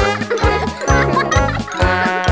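Instrumental children's music: a steady beat under bright, high pitched notes.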